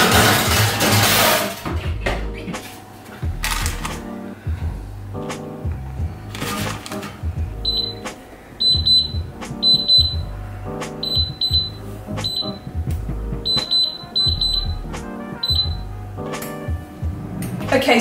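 Touch-panel buttons on a digital kitchen appliance beeping as it is programmed: a dozen or so short, high beeps in quick groups over background music. Near the start, a baking tray slides into an oven.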